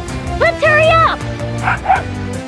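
Cartoon dog barking: one drawn-out, bending yap about half a second in, then two shorter, noisier sounds near the end, over background music.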